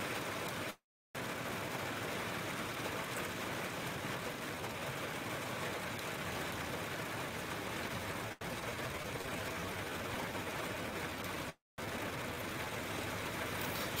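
A steady, even hiss with no pitch to it, cut off twice for a moment by brief dropouts to silence.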